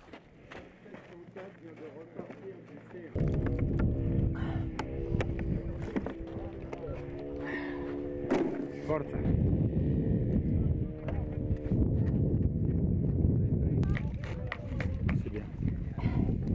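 Wind rumbling on the microphone, starting suddenly about three seconds in, with a steady droning tone of several pitches over it that fades out near twelve seconds.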